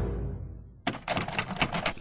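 A music cue fading out, then a quick run of sharp clicks and rattles from a door latch being tried on a locked door.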